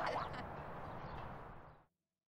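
A brief human voice at the start, then faint, even background noise that fades out to silence just before the end.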